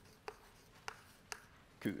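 Chalk writing on a blackboard: three sharp taps and short scrapes as letters are chalked, about half a second apart. A man says one word near the end.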